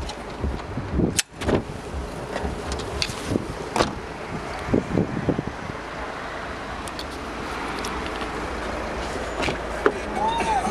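Low wind and handling noise on a handheld camera's microphone, broken by a few sharp knocks and clicks, the strongest about a second in.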